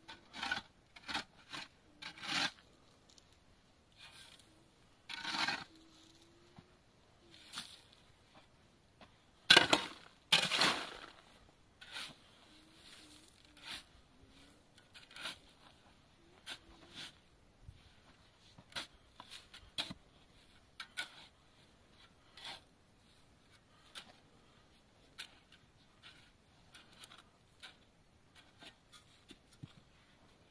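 Steel shovel scraping and scooping into a pile of sand and gravel in irregular strokes a second or two apart, with a louder pair of scrapes about a third of the way in.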